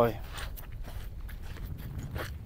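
Footsteps crunching on a pebble beach: a few irregular steps over a low steady rumble.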